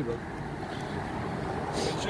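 Steady rolling noise of Onewheel electric boards riding along an asphalt street, with a brief hiss near the end.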